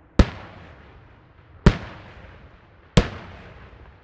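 Aerial firework shells bursting: three sharp bangs, about a second and a half apart, each trailing off into a fading echo.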